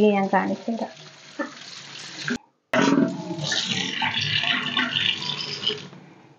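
Tap water running and splashing into an aluminium pot and a stainless-steel sink as the pot is rinsed by hand. The water sound cuts out briefly about two and a half seconds in, then resumes.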